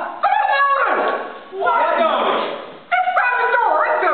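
Several voices singing together in a large hall, holding notes that step and slide in pitch, with a brief dip in loudness about halfway through.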